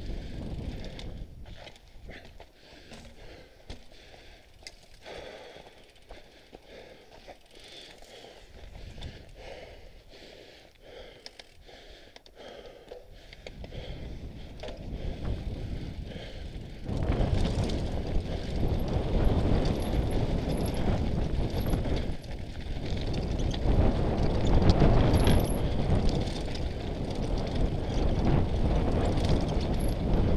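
Mountain bike riding down a rocky trail: the bike rattles and knocks as it rolls over stones. About halfway through, a louder, continuous rush of wind and tyre noise sets in as the bike picks up speed.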